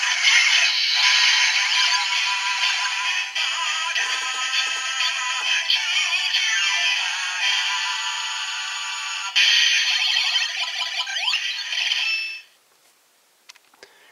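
Kamen Rider Ex-Aid Gamer Driver toy belt, with the Mighty Action X and Juju Burger Gashats inserted, playing its electronic transformation sounds: an announcer voice and synthesized song through its small speaker, thin and tinny with no bass. It stops abruptly about twelve and a half seconds in.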